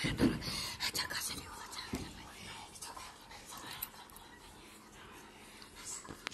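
Hushed, breathy whispering voices, louder in the first couple of seconds and fading to faint.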